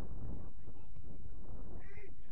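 Low wind rumble on the microphone, with faint distant shouts from people on the football pitch.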